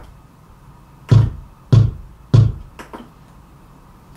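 Electronic drum beats from a digital keyboard ticking off quarter notes at about 98 bpm: three strong beats evenly spaced, then a fainter fourth, each a low thump with a click on top.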